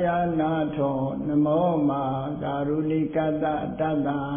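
A man chanting a Buddhist recitation, holding long, drawn-out notes that waver gently in pitch.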